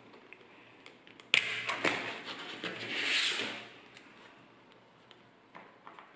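Small magnetic balls snapping together with a sharp click, followed by about two seconds of clattering and sliding as they settle between plastic cards, then a few faint clicks near the end.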